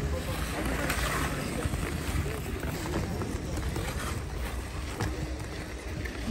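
Busy outdoor ice rink ambience: indistinct voices of the crowd over a steady noise of skates on the ice.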